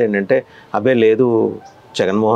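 A man laughing into a close lapel microphone, in two bursts of voice, the second around a second in, fading quieter near the end.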